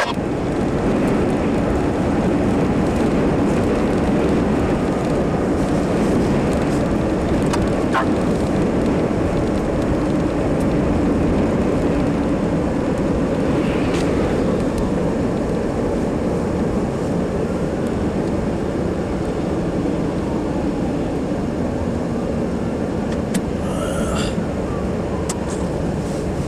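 Steady engine and road noise inside a moving vehicle's cabin, with a few brief clicks, easing a little near the end.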